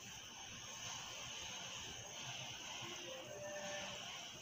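Faint, steady background hiss with a thin, high, steady tone running through it; a couple of faint short tones come about three seconds in.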